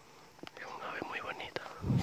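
A person whispering softly, with a few light clicks of footsteps on the trail and a dull low thump near the end.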